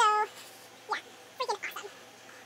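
A short, high-pitched cry right at the start, followed by fainter, shorter voice-like cries about a second in.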